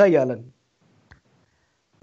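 A man's speech trailing off with falling pitch, then a brief pause broken by a single faint click about a second in.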